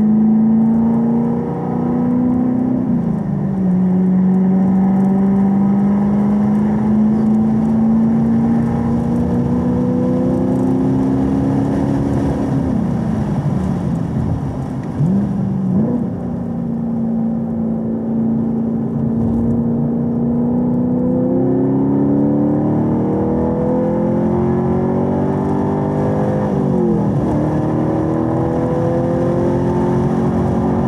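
Camaro SS 1LE's 6.2-litre V8 heard from inside the cabin, pulling in second gear with its pitch climbing slowly, falling back about 12 seconds in, then climbing again. Near the end the note drops sharply and picks up again with the upshift to third.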